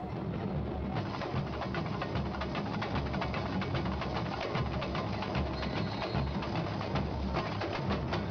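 Samba school percussion section playing live in a street parade: deep pulsing bass drums under dense, rapid drum strokes.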